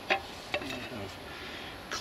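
Light handling clicks of a metal module cover on a wooden bench: one sharp click just after the start, a smaller one about half a second later and another near the end, over a steady faint hiss.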